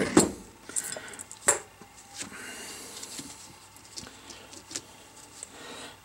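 Light clicks and knocks of steel parts being handled as a tapered roller bearing and seal are worked down over a spindle and plastic bearing adapter, with a soft scraping in the middle.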